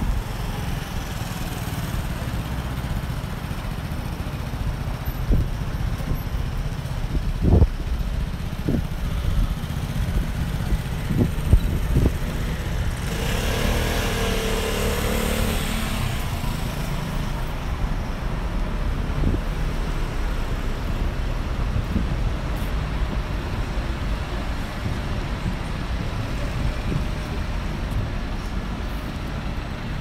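Street traffic: a steady low rumble of cars and double-decker buses. A few short knocks come in the first half, and one vehicle passes louder about halfway through.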